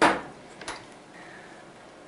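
The clear acrylic door of a Harvest Right home freeze dryer shutting against its chamber with one sharp knock that rings briefly, followed by a lighter click under a second later.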